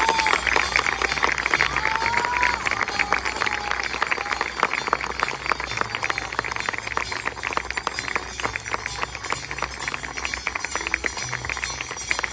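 Audience clapping with dense, rapid, irregular claps, over crowd noise and music playing underneath.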